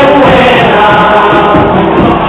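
Chirigota carnival group singing a pasodoble in chorus, loud and steady.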